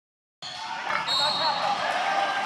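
Silence for a moment, then the ambience of a large gym starts about half a second in: echoing background noise with distant voices and a faint high steady whine.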